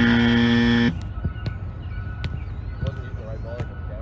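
A flat buzzer tone, held for just under a second, followed by a few faint knocks.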